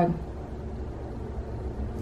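A pause in speech with only a steady, low background rumble.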